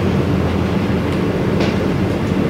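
A steady low rumble of background room noise, even in level throughout.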